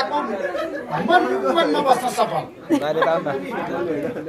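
Speech only: a man talking into a handheld microphone.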